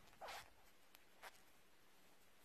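Near silence, broken by a brief faint rasp of yarn drawn through stitches on a metal crochet hook a quarter second in, and a fainter one about a second later.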